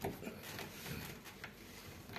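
Faint, scattered small clicks of a hand ratcheting screwdriver turning a screw in the metal rosette of an interior door's thumb-turn lock.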